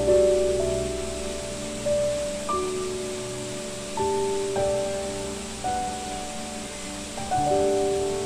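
Slow, gentle solo piano music: single notes and chords struck every second or so, each ringing and fading away. Underneath is a steady hiss of rushing water.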